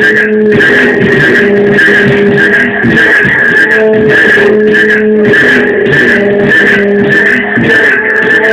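Loud live electronic music from a Korg Kaossilator Pro and Kaoss Pad jam: a steady beat under long held synth notes.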